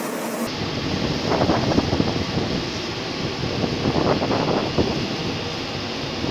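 Steady rushing noise of water-cannon jets and hoses spraying burning boats, with faint voices now and then. It starts about half a second in.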